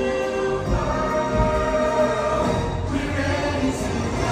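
A stage musical number: a group of voices singing held notes over orchestral backing, heard from the audience in a large theatre.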